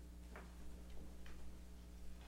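Quiet room tone with a steady low electrical hum and a few faint, irregular ticks.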